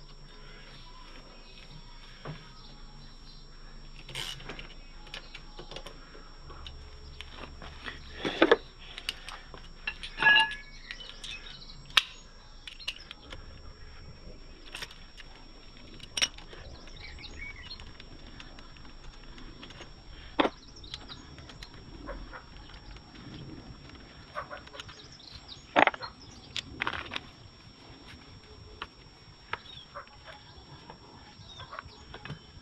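Scattered metallic clicks and knocks of hand tools and brake parts as a motorcycle's front brake caliper is unbolted and worked loose, with a few louder knocks partway through.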